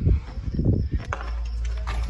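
Someone crawling through a narrow play-structure tube tunnel: a few irregular knocks and thumps of knees and hands against the tube, with low rumbling and shuffling.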